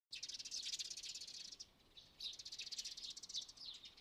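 Sparrows chirping in quick, high twittering runs, in two stretches with a short lull a little under two seconds in.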